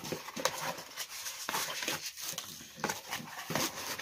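Cardboard shipping box handled by hand: flaps pulled open and contents pushed about, giving irregular scrapes, rustles and small knocks.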